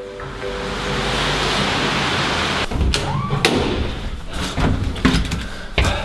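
A steady hiss, then from about three seconds in a string of knocks and thuds from a building's glass entrance door being pushed open and swinging shut, with footsteps on a hard floor.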